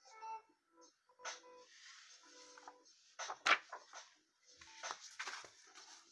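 Paper comic books being handled and swapped on a cloth-covered table: rustling and sliding with a few sharp strokes, the loudest a slap about three and a half seconds in. Faint background music with held notes plays under the first few seconds.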